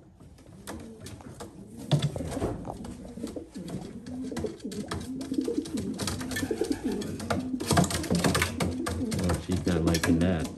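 Homing pigeon cock cooing at a hen just put in with him for pairing: repeated low coos, sparse at first and growing louder and busier from about two seconds in. Short clicks and rustles of the birds moving in the cage come with them.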